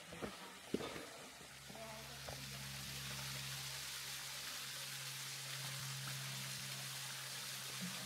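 Thin waterfall splashing into its rock pool, heard as a faint, steady hiss. A few light knocks sound in the first two seconds, and a low steady hum joins about a second and a half in.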